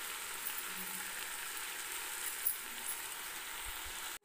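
Jackfruit curry sizzling steadily under a steel plate lid in a steel kadai on medium heat, a soft even hiss with faint crackles.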